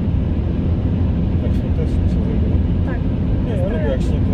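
Steady low road and engine rumble heard inside a moving car's cabin. A voice starts speaking near the end.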